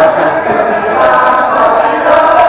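Male Kecak chorus chanting together, with a held, sung melodic line over the group voices.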